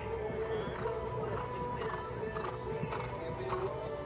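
Music playing steadily, with a horse's hooves striking the sand footing in a run of dull thuds about twice a second as it lands from a jump and canters on.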